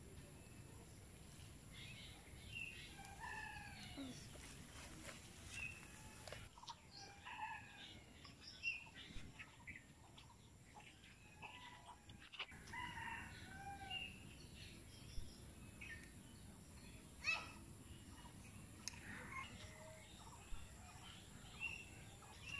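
Faint bird calls: many short chirps and whistles come and go on and off. A single sharp click stands out about seventeen seconds in.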